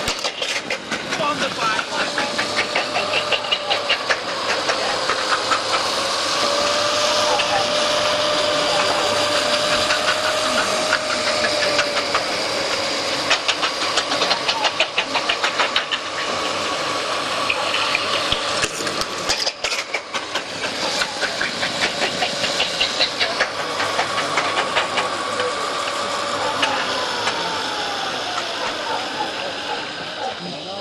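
Greyhound track's mechanical lure drive whining steadily while the dogs race, its pitch wavering, then falling near the end as the lure slows. Spectators shout over it.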